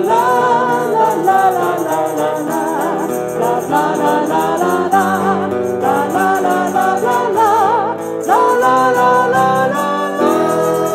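Live pop song: a woman and a man singing together over electric guitar, with a tambourine jingling along. About eight seconds in, the voices slide up into a long held note.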